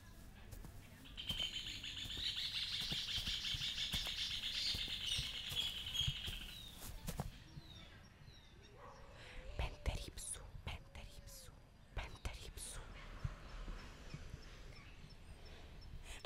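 Birds singing among trees: a dense, rapid high trill lasting about five seconds, then scattered short chirps and calls, with soft clicks and rustles of cloth.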